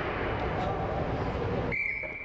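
Ice-rink ambience with distant voices, then a single steady high-pitched tone starts near the end and holds for about a second.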